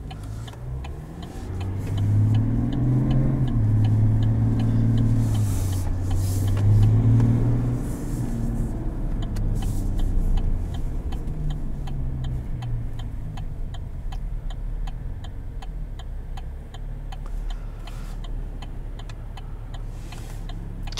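The 3.0 L Duramax inline-six turbo diesel of a 2021 Chevrolet Silverado 1500, heard from inside the cab, pulling hard under acceleration, its pitch climbing and dropping back in steps as the automatic shifts up, then settling to a quieter steady cruise after about eight seconds. A faint, fast, regular ticking runs underneath.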